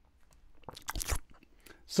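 A sip of port close to the microphone: a cluster of lip and mouth clicks with two soft gulping thumps about a second in.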